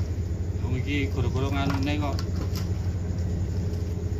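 A steady low engine-like hum runs throughout, with a man's voice talking briefly about a second in.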